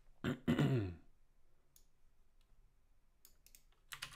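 A man clearing his throat, a short sound and then a longer, louder one falling in pitch, then a few faint scattered clicks.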